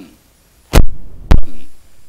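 Two loud thumps on the microphone about half a second apart, the second one shorter, heaviest in the bass: microphone handling noise.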